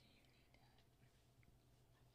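Near silence: faint room tone with a low hum and a few soft clicks.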